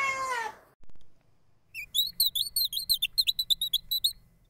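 A cat meows once, a call of about a second that rises then falls in pitch. From a little under two seconds in comes a fast, even run of short high chirps, about seven a second.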